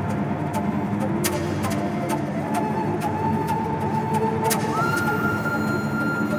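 Several voices crying and wailing in distress over a dense film soundtrack. A single high held note comes in near the end.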